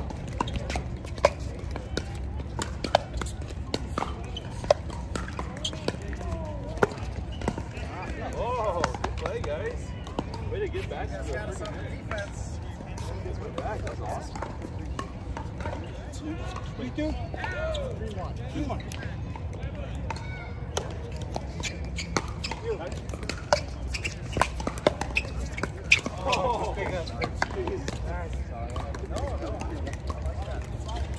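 Pickleball paddles hitting a plastic ball: sharp, irregular pops during rallies, a few louder than the rest. Under them are a steady low hum and indistinct voices.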